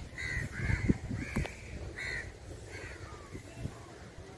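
Crows cawing, about five harsh calls in the first three seconds, getting fainter. There are a couple of dull thumps and a sharp click about a second in.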